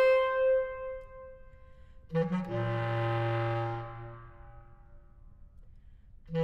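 Solo bass clarinet: a long held high note fades out, then about two seconds in a low note is attacked, held for about two seconds and dies away.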